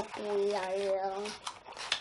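A young child humming one steady note for about a second, followed by a few faint handling clicks.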